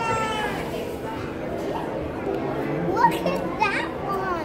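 Young children's voices calling out excitedly, with a couple of high, rising exclamations about three seconds in, over the murmur of other visitors in a large echoing hall.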